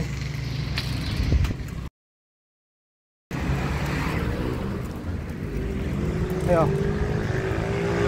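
Wind and road rumble on the microphone of a camera carried while cycling along a street, with traffic noise. The sound drops out completely for about a second and a half near the start. In the second half a steady engine-like tone rises slowly.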